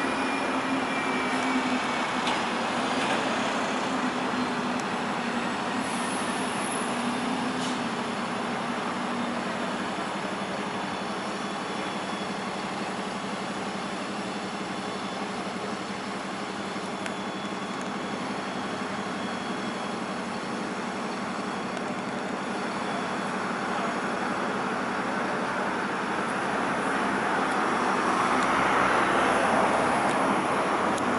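Steady road traffic on a busy city street, with an engine hum for about the first ten seconds and a vehicle passing close, louder, near the end.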